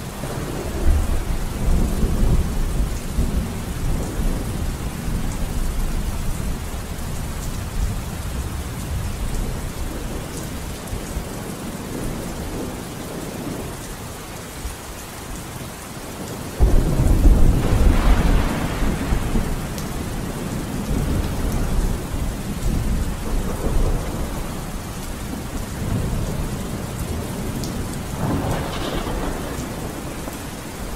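Steady rain with rolling thunder: a low rumble about a second in, then a louder thunderclap starting suddenly a little past halfway and rumbling on for several seconds, with a weaker rumble near the end.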